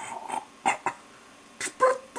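A person's voice making animal-like noises: a handful of short, sharp grunting bursts.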